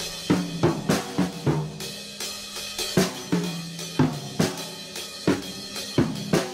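Drum kit played with sticks: an uneven run of snare and cymbal strikes, several a second, some hits ringing briefly at a low pitch.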